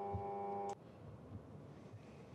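Steady electrical hum with many overtones in the audio feed, cutting off suddenly about three-quarters of a second in, leaving faint room tone.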